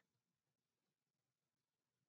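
Near silence: a gap with no audible sound.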